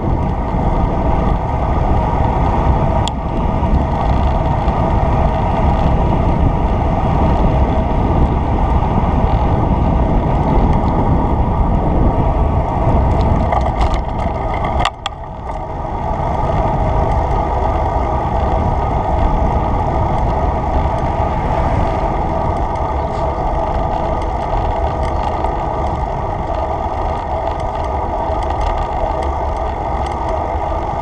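Steady wind rush over a moving action camera's microphone while riding along a road, dipping briefly about halfway through.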